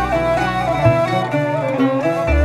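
A Greek folk ensemble of lyra, ney, qanun, lafta and double bass playing an instrumental passage: a stepwise melody over plucked strings, with deep double-bass notes underneath.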